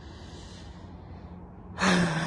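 A man drawing a long breath in, then starting to sigh it out near the end.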